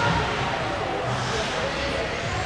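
Indistinct voices over a steady background noise in an ice rink, with no sharp impacts.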